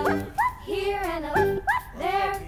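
Children's background music, with short rising yelps like a small dog's barks sounding in it several times.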